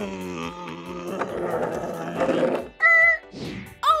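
A growling, engine-like "vroom" noise for a toy car: it slides down in pitch at the start and holds low for about three seconds, over children's background music. A brief steady high note follows about three seconds in.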